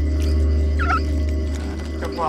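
A low, steady drone of eerie background score, with one brief, wavering squawk-like call about a second in.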